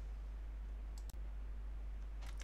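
A quick pair of clicks from a computer about a second in, over a steady low hum.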